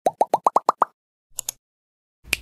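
Cartoon-style editing sound effect: a quick run of about seven bubbly 'bloop' plops, each sliding up in pitch and each higher than the last, followed by two short clicks.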